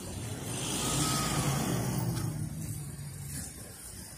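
A road vehicle's engine and tyre noise swelling to a peak about a second in, then fading, as it passes close by on the street.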